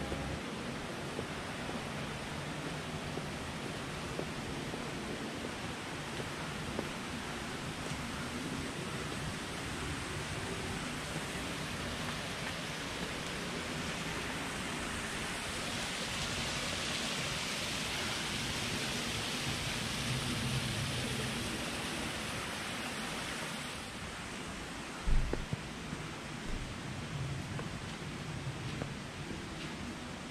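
Steady rushing of a shallow rocky mountain stream, growing louder and brighter about halfway through and dropping back shortly before the end. A brief low thump comes about 25 seconds in.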